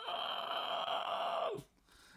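A man's drawn-out, breathy vocal sound, held steady for about a second and a half and stopping abruptly.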